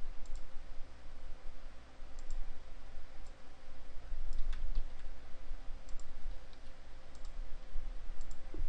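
Scattered clicks of a computer mouse, some in quick pairs, over a steady low hum.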